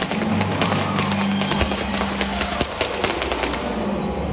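Stage pyrotechnics on a theatre chandelier crackling and popping in a dense run of sharp cracks that thins out near the end. Underneath, the musical's orchestra holds sustained low notes.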